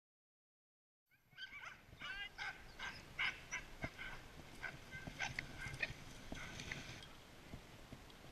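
A pack of sled dogs barking and yelping, many short overlapping calls, starting about a second in and easing off near the end.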